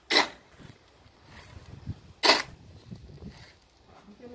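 A square-bladed shovel scraping into a dry cement and gravel mix, with two short, sharp scrapes: one right at the start and another about two seconds later.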